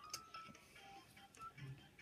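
Near silence with faint, brief musical tones in the background.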